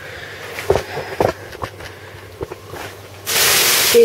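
A few light knocks and clicks from handling things on a kitchen worktop beside digital kitchen scales. Near the end a loud, steady rushing hiss starts suddenly and becomes the loudest sound.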